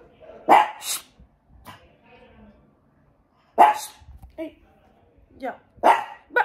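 A small dog barking: several short, sharp barks at uneven intervals, the loudest three in the first four seconds.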